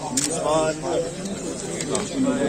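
Men talking in a crowd, several voices overlapping.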